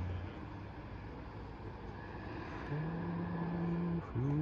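A man's sung note held out and stopping a moment in, then steady low background noise for a couple of seconds, before he takes up another low note and holds it steadily.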